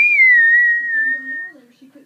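A person whistling by mouth as a game sound effect. One note swoops up, then is held and sinks slowly for about a second and a half before stopping.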